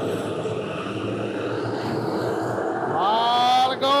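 Factory stock race cars running around a dirt oval under green flag: a steady blend of several engines at speed. A man's voice comes in near the end.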